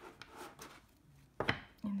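A deck of tarot cards being squared up on a wooden tabletop: faint rubs and light taps of the card edges, then one sharp knock of the deck against the table about one and a half seconds in.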